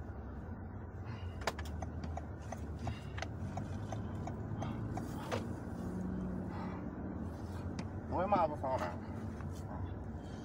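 Steady low hum of a car interior with the engine running, with a light regular ticking of about three ticks a second for a few seconds. A short voice sound comes about eight seconds in.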